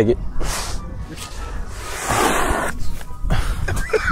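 Rustling noise of a mattress being handled and stood on end, in two bursts, the longer one about two seconds in, over a steady low wind rumble on the microphone.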